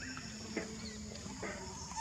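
A young macaque's short high-pitched squeaks and a brief wavering call, with a louder call starting right at the end, over a steady high insect drone.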